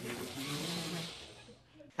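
Several people laughing, breathy and half-suppressed, fading out about a second and a half in.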